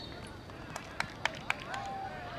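Four sharp clicks, evenly spaced at about four a second, then faint voices talking near the end.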